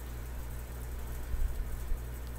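Steady low hum with faint hiss, and a couple of soft low bumps in the second half.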